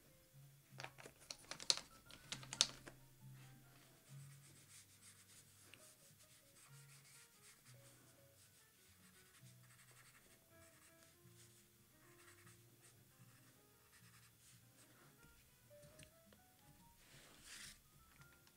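Soft, quiet background music, over which a brush's bristles drag across paper in a few scratchy strokes about one to three seconds in, with a softer stroke near the end.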